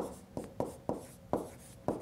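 A stylus tapping and scratching on a tablet screen while handwriting, with about six short taps as the letters are written.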